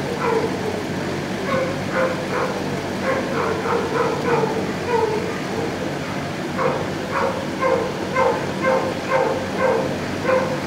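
Shelter dogs barking repeatedly, short barks coming about twice a second and more thickly in the second half, over a steady low hum.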